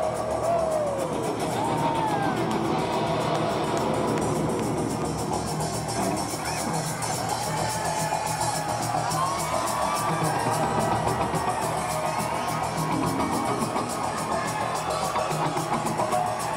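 A live rock band with electric guitar playing in an arena, with a large crowd cheering and whooping over it, as heard from the audience.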